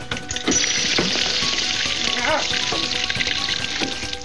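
Water spraying hard from a broken pipe fitting, a steady loud hiss that starts just after the beginning and cuts off just before the end. A short wavering cry is heard about halfway through.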